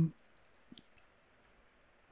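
Two faint computer mouse clicks, about three quarters of a second apart, over quiet room hiss.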